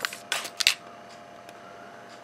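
A small flathead screwdriver clicking against the plastic ZIF connector latch on a 1.8-inch laptop hard drive: a few sharp clicks in the first second, then only a faint steady hum.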